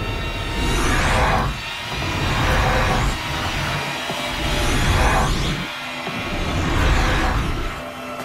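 Tense TV score with four whooshing swells, one about every second and a half to two seconds, each rising and then falling away: the sound effect for a woman splitting into duplicates of herself.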